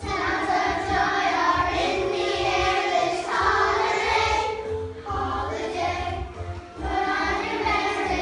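Children's choir singing a song together, with short breaks between phrases about five and again about seven seconds in.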